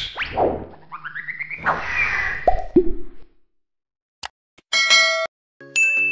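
Cartoon sound effects of an animated title sequence: a falling whoosh, rising glides and two quick plops that drop in pitch. After a short silence comes a bright chime, and music starts near the end.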